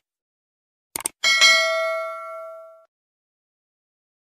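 Subscribe-button animation sound effects: a quick double mouse click about a second in, then a bright notification-bell ding that rings with several tones and fades out over about a second and a half.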